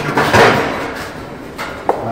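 Stainless-steel grease trap's strainer basket being lifted: a loud metal scrape and clatter about half a second in that fades out, then a short sharp knock near the end.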